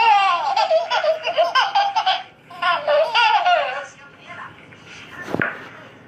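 Baby laughing and squealing in two bouts, the second ending about four seconds in. A single sharp click follows about five seconds in.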